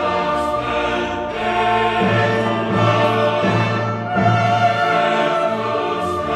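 Classical choral music: a choir singing slow, held chords with orchestral accompaniment, the harmony changing about once a second.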